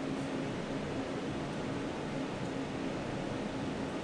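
Steady whir of a CNC spindle's water chiller, its fan and pump running with a faint low hum, while the machine sits idle.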